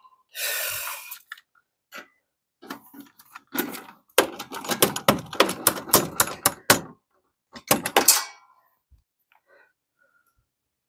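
Socket ratchet clicking as a bolt on a tractor engine is tightened down: a run of quick, uneven metallic clicks, with a short cluster of clicks after a pause. A brief hiss is heard just before the clicking starts.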